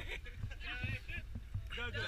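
Steady low rumble of a coach bus's engine, heard from inside the passenger cabin, under quieter chatter.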